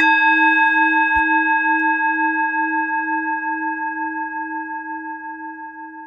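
A singing bowl struck once, ringing in several steady tones with a slow pulsing waver and fading away over about seven seconds.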